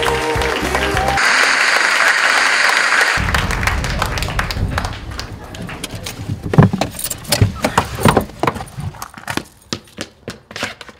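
Music ends about a second in and is followed by a couple of seconds of even noise. Then come irregular clicks, knocks and jingling as a man gets out of a car: the seatbelt, keys and car door are handled, with the loudest knock a little past halfway.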